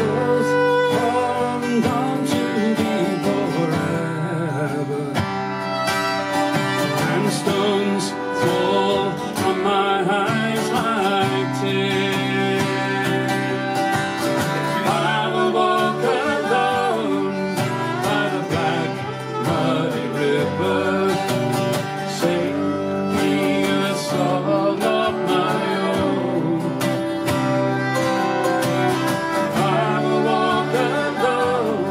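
Instrumental break of a slow folk song: two acoustic guitars strumming chords while a fiddle plays the melody.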